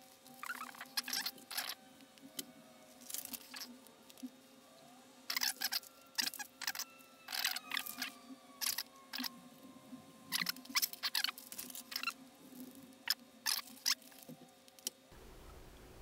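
Crinkling and rustling of small plastic component bags and a paper sheet being handled, in short scattered crackles and clicks. A faint steady hum runs underneath and stops about a second before the end.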